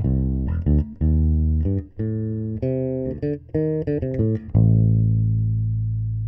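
Electric bass guitar recorded through a Radial DI and an Electro-Voice RE320 microphone on the bass cabinet, the two tracks blended as recorded. It plays a quick riff of short notes, then a long low note from about four and a half seconds in that rings on and slowly fades. The microphone track lags the DI by about two thousandths of a second, which can change the blended tone; the narrator likens this unaligned blend to a scooped mid-range sound.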